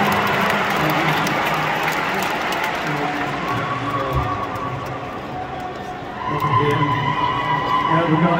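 Arena crowd cheering and applauding, the noise dying away over about six seconds. Then voices come up from about six seconds in.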